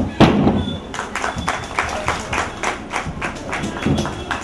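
A wooden board breaking under a karate hand strike: one loud thud with a crack just after the start. It is followed by a steady run of sharp taps, about five a second, and another dull thud near the end.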